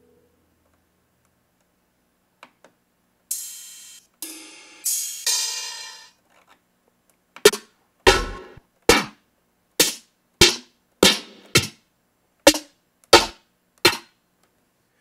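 Drum samples auditioned one at a time on an Akai MPC Live: three longer hissy percussion hits, then about ten single snare hits from an R&B snare library, a different snare each time, a little over half a second apart.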